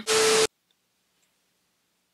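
A half-second burst of static-like hiss with a steady low tone running through it, which cuts off abruptly into dead digital silence.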